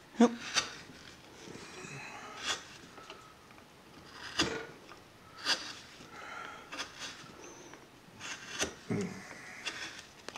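Hand carving blade cutting into a wooden figure in short, separate strokes, a sharp slicing scrape every second or so with quiet scraping between.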